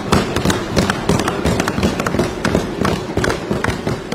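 Many legislators thumping their desks in applause: a dense, rapid clatter of overlapping knocks.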